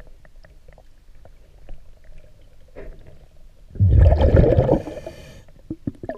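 Underwater recording of a scuba diver's regulator exhaling: one rush of bubbles lasting about a second, about four seconds in, over a faint background of scattered small clicks and crackles in the water.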